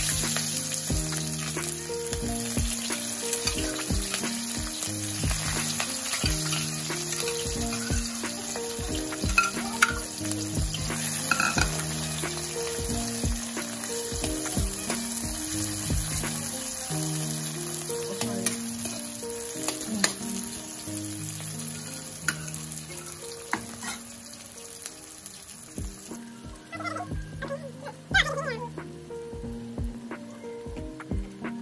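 Onions, green chillies and tomatoes sizzling in hot oil in a blackened kadai, with a metal ladle stirring and knocking against the pan. The sizzle drops off near the end. Soft background music runs underneath.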